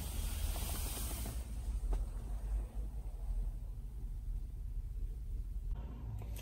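Steady low rumble inside an SUV's cabin, with a few faint clicks.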